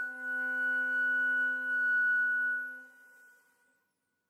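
Flute holding one long, high, pure-toned note, with a violin sustaining a low note beneath it. The violin note stops first and the flute note fades out near the end.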